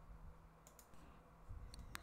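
Near silence: room tone with a few faint clicks, the last of them near the end.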